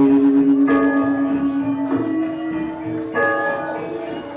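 Balinese gamelan dance music: slow struck metallophone notes, a new note about every second, each ringing on until the next.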